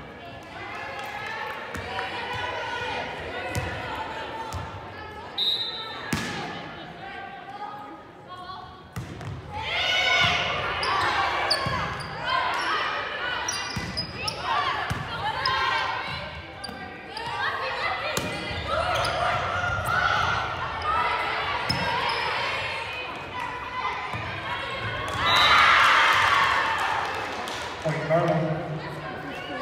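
Volleyball rally in a gym hall: players calling and shouting, with sharp smacks of the ball being struck and hitting the floor, echoing. A loud burst of cheering and yelling comes near the end as the point finishes.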